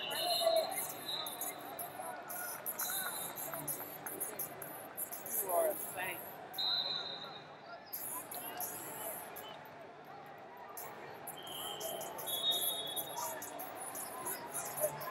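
Wrestling arena ambience: a background of distant, overlapping voices and a shout a little past the middle, with several short high-pitched squeaks, like shoes on mats.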